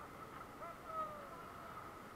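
Faint, distant shouting voices: a couple of brief calls about a second in, over a low background hiss.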